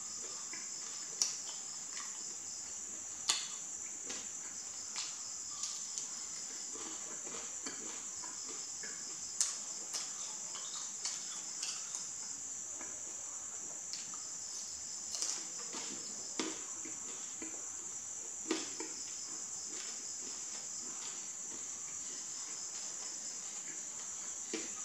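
Fried chicken wing being torn apart by hand and eaten, with sharp, irregular crackles and crunches every one to three seconds. Under them runs a steady high-pitched background drone.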